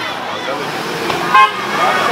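A short, loud car horn toot about one and a half seconds in, over the chatter of a street crowd.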